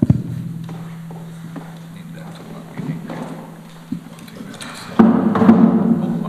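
A handheld microphone knocks as it is set down on a table, over a steady low hum. About five seconds in, an acoustic guitar is picked up: a knock on its body and its strings ringing loudly.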